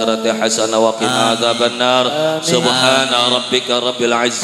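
A man chanting an Arabic closing prayer (du'a) into a microphone over a PA. His voice moves in melodic phrases with briefly held notes.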